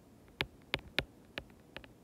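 A stylus tip tapping and clicking on a tablet's glass screen while handwriting a word: about half a dozen short, irregular ticks.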